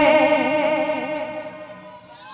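A held note on an electronic keyboard with a regular vibrato, fading steadily away as the song finishes.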